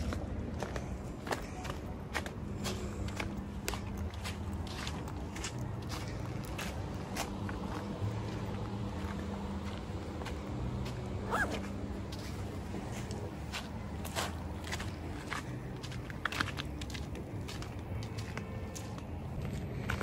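Footsteps crunching on a dirt and loose-gravel path, irregular steps throughout, over a low steady hum. A single short rising squeak sounds about halfway through.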